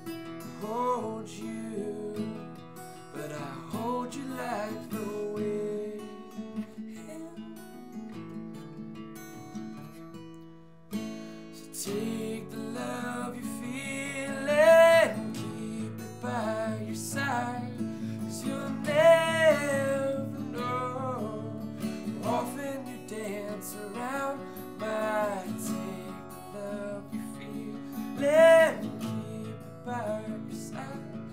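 Acoustic guitar strummed in a folk song, with a man's wordless vocal melody rising and falling over it. The playing drops away briefly about eleven seconds in, then comes back fuller.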